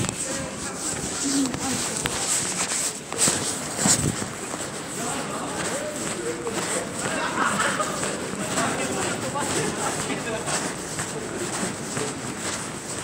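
Street ambience on a busy pedestrian shopping street: indistinct voices and footsteps, with a couple of sharp knocks about three and four seconds in.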